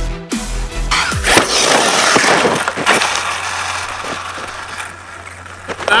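Electronic music with falling bass drops for about the first second. Then an Arrma Kraton 6S RC monster truck comes down hard from a jump onto dirt: a loud crash with several sharp knocks that fades out over the next few seconds. It is a bad landing for the truck.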